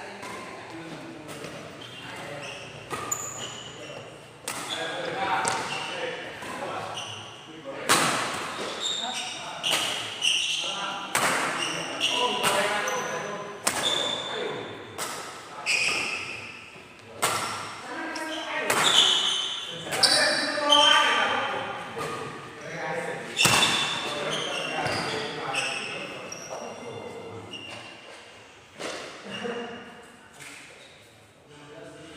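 Badminton doubles rally echoing in a large hall: rackets striking the shuttlecock in sharp cracks about once a second, busiest in the second half, mixed with short high squeaks of court shoes on the wooden floor.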